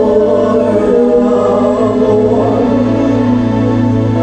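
Live gospel worship singing led by a woman's voice through a microphone, holding long notes over steady sustained backing.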